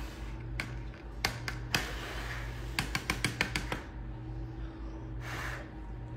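Light clicks and taps of tableware being handled, spread out with a quick run of about seven near the middle, over a steady low hum. A short breathy puff comes near the end.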